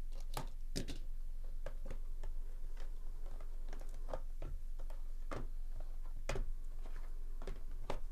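Cardboard trading-card box being slit open and handled: irregular sharp clicks, taps and scrapes of cardboard as the lid is lifted and a mini-box is pulled out, over a steady low hum.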